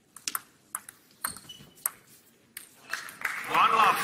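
Table tennis ball being hit and bouncing in a rally, sharp clicks every half second or so, followed near the end by a loud shout as the point is won.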